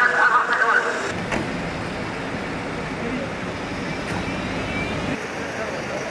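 Police cars driving past, a steady engine and road noise that drops away shortly before the end; in the first second a higher wavering tone sounds over it and stops.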